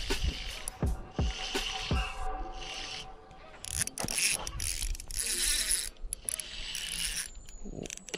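Spinning reel being cranked against a hooked fish, its gears whirring and the drag ratcheting in short runs, with a few knocks in the first couple of seconds.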